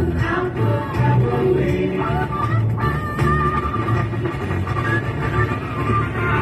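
A pop-rock song with singing and guitar, played from an FM radio broadcast on a car radio.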